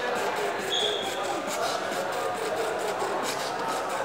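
Solo beatboxing (vocal mouth percussion): a steady stream of mouth-made clicks, kick and snare hits, with a brief high whistle-like tone about a second in.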